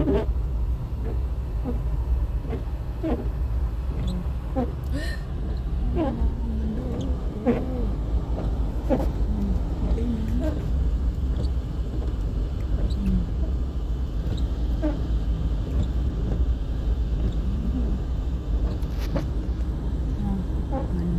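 Steady low rumble of a car's engine and tyres heard from inside the cabin, driving slowly on a snow-covered road.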